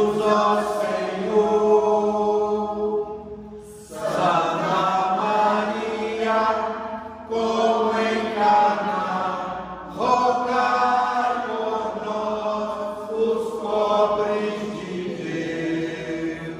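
A small group of voices praying the rosary aloud together in a chant-like cadence, in phrases of about three seconds with short breaks between them.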